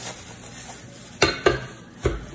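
Plastic bag crinkling as a round metal grill plate is handled, then two sharp metal clanks about a quarter second apart, a little past a second in, as the plate is set down on the metal hot pot.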